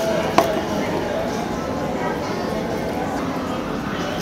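Background restaurant chatter from other diners, with one sharp click about half a second in as a metal spoon knocks against a small plastic condiment tub.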